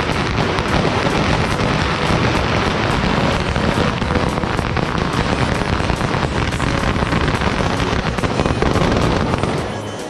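Long strings of pagara, Surinamese red firecrackers laid out along the street, going off in a continuous rapid crackle of bangs. The crackle eases off near the end.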